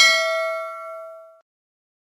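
Notification-bell 'ding' sound effect: one bell-like chime of several ringing tones, struck once and fading, cut off about a second and a half in.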